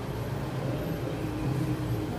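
A steady low hum, like a running engine.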